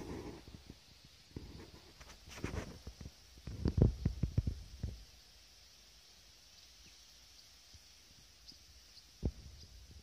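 Low, irregular rumbles and thumps of wind buffeting and handling on a handheld camera's microphone, strongest about four seconds in, then a faint steady outdoor background with a single click near the end.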